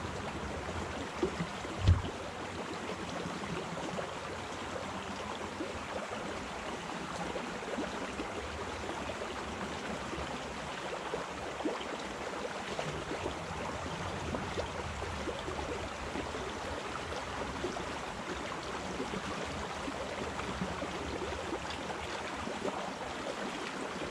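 Shallow creek water running steadily over a rocky bed, with one short deep thump about two seconds in.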